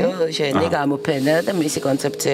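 Only speech: a person talking continuously.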